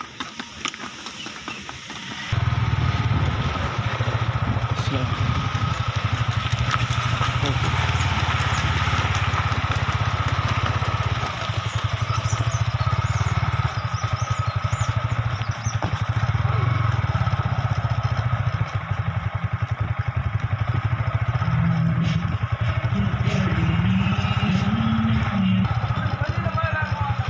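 A motorcycle engine runs steadily close by. It comes in suddenly about two seconds in and stays loud after a quieter opening.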